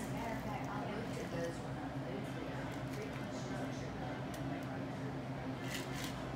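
Quiet bar room noise: indistinct voices over a steady low hum, while a thin stream of shaken cocktail is strained from a metal cocktail shaker into a coupe glass.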